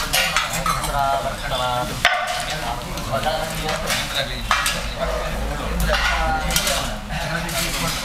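A homa fire crackling and sizzling, with scattered clinks of metal ritual vessels and a couple of brief snatches of voice early on.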